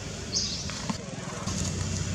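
A steady low engine-like rumble that grows a little louder near the end, with one short high chirp under a second in and a couple of faint clicks.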